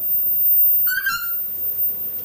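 Noisy friarbird giving one short, harsh call about a second in.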